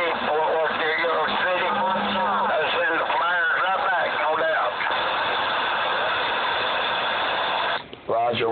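CB radio receiving other operators: garbled, distorted voices over static for about the first half, then a steady hiss of an open carrier that cuts off suddenly just before the end.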